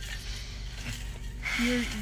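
Low steady hum inside a car, then a young woman starts speaking near the end.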